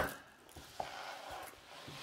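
Faint rustling and soft handling noise from a large diamond painting canvas being laid flat on a table after being turned over, with a small tap about a second in.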